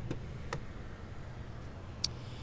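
A single light click of a car door latch releasing as the driver's door is opened, over a low steady background hum.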